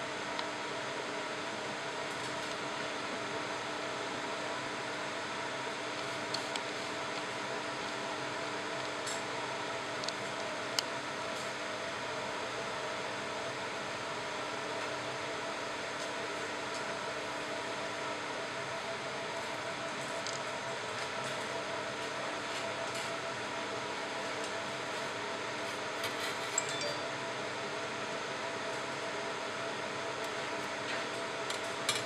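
Steady hum of a fiber laser marking machine's cooling fan, with a few faint ticks now and then.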